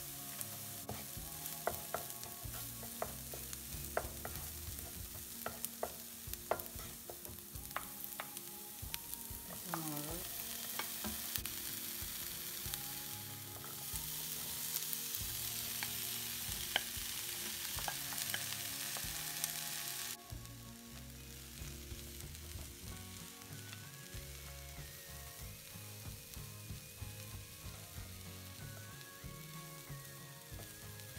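Chopped onion, cumin seeds and crushed red pepper sizzling in a little oil in a nonstick wok, with scattered pops and clicks of spatula stirring. The sizzle gets louder, then drops off suddenly about two-thirds of the way through as sliced ivy gourd is in the pan and being stirred.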